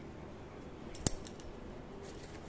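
A single sharp click about a second in, with a few lighter clicks just before and after it, over faint room noise.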